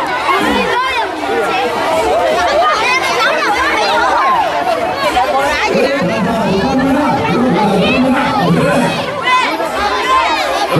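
A crowd of schoolchildren and adults chattering and calling out, many voices overlapping. Lower adult voices come to the fore in the second half.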